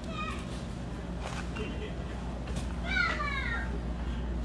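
A high, meow-like cry that falls in pitch, short near the start and longer and louder about three seconds in, over a steady low hum.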